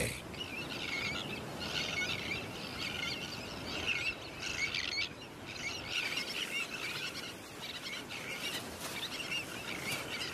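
A tern colony: many terns giving high, chattering calls that overlap and come in bursts, over a faint steady hiss.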